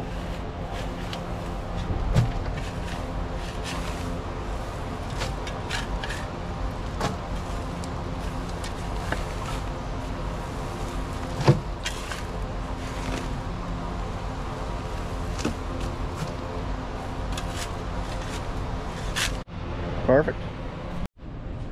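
Skid steer loader engine idling steadily, with scattered scrapes and clatters of a spade shovel digging loose dirt and tossing it into the loader's steel bucket.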